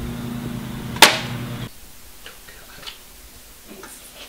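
A single sharp bang about a second in, over a steady low mechanical hum. The hum cuts off suddenly shortly after.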